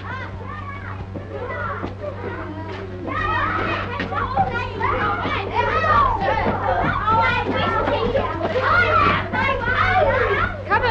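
A crowd of children shouting and calling out at play, growing louder and busier about three seconds in. A steady low hum runs beneath.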